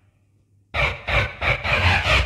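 Techno track in a DJ mix: after a brief drop-out, a run of hard, deep percussive hits comes in about three times a second, each trailing off with a reverb tail.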